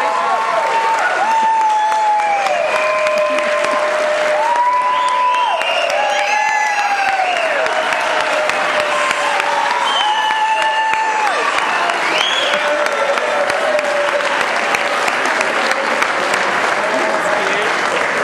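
Audience applauding, with high-pitched shouts and whoops of cheering over the clapping for much of the time.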